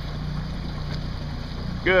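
Steady low hum of a motorboat engine running slowly on the water.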